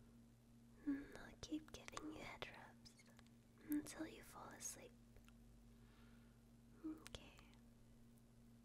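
A woman whispering softly in three short phrases, with small mouth clicks, over a faint steady hum.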